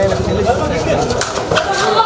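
Men's voices calling out continuously during a kabaddi raid, with a few sharp slaps cutting through.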